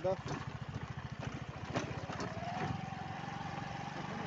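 Motorcycle engine running with a steady, even low throb as the bike is ridden.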